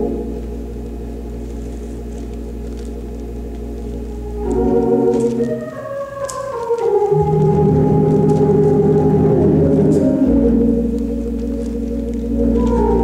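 Organ playing held chords over a low sustained bass note. About four and a half seconds in, the chord changes and a run of notes steps downward, then fuller, louder chords are held.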